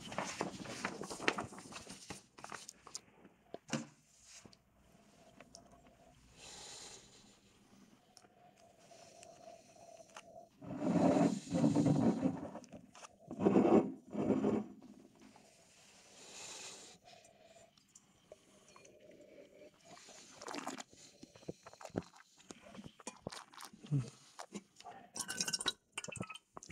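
Wine tasting mouth sounds: sniffs at the glass and slurping, swishing mouthfuls of red wine, loudest in two bursts near the middle, with quiet gaps between.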